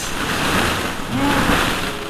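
Hollow plastic ball-pit balls rustling and clattering against each other in a continuous rushing wash as someone wades and digs through a roomful of them.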